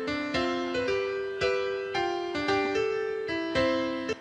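Computer-generated piano music from the TransProse text-to-music program: a steady run of struck notes over held lower notes. It is an early version that its maker presents as lacking emotional accuracy.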